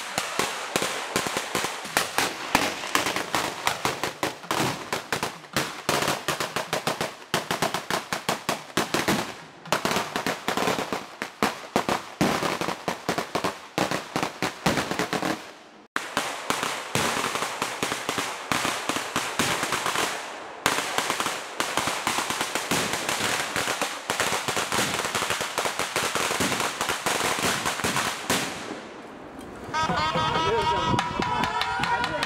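A long string of firecrackers going off, a rapid crackle of many sharp bangs. It breaks off suddenly about halfway, starts again at once, and dies away near the end.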